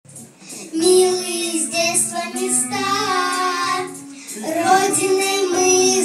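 Children's song: a child's singing voice with musical accompaniment, in phrases, starting about a second in.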